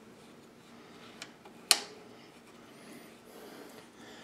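Small spacers being fitted by hand into a bearing on a mountain bike's suspension linkage: faint handling noise, a light click a little after one second and a sharp click about half a second later.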